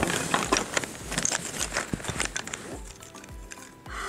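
Wooden interlocking puzzle pieces clicking and clattering against each other as the puzzle is taken apart by hand. The clicks thin out after about three seconds, over background music with a soft low beat.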